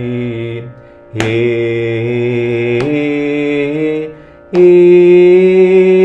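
Man singing long held notes of a Carnatic vocal exercise, with a short breath between each. The voice steps up in pitch within the notes, and the last note, from about four and a half seconds in, is the loudest.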